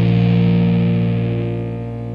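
A held, distorted electric guitar chord ringing out at the end of a song, fading away with its brightness dying off near the end.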